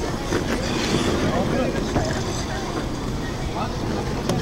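Ice rink crowd: skate blades scraping and gliding on the ice, with people talking in the background and a steady low rumble.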